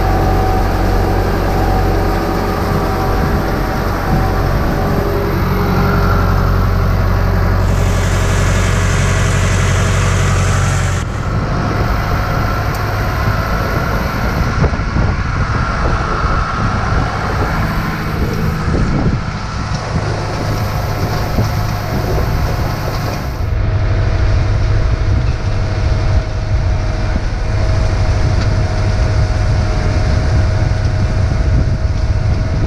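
Case tractor's diesel engine running steadily under load while pulling a rotary hay rake through cut hay. The tone changes abruptly twice, about a third and three quarters of the way through.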